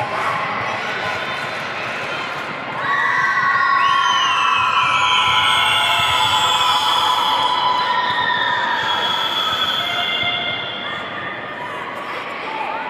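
Audience cheering with many shrill, high-pitched screams and shouts. It starts suddenly about three seconds in, after steady music, and dies down near the end.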